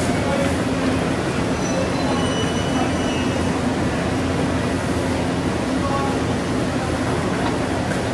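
E259 series Narita Express electric train creeping slowly into an underground platform for coupling, a steady low rumble echoing in the enclosed station. A few faint high squeals are heard about two to three seconds in.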